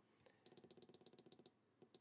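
Near silence: room tone, with a very faint run of rapid, evenly spaced ticks, about ten a second, that stops about a second and a half in.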